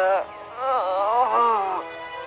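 Cartoon pony characters groaning and moaning: a short falling groan right at the start, then longer wavering moans through the middle, from characters feeling sore and worn out. Soft background music runs underneath.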